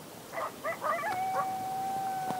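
Coyotes yipping a few times, then a long howl held on one steady pitch starting about halfway through.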